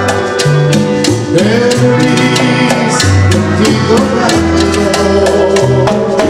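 Live tropical band music: a steady beat of hand-drum and percussion strikes over bass notes that change about once a second.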